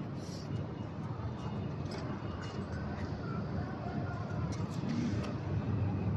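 Steady low rumble of outdoor vehicle noise, with a few faint light ticks.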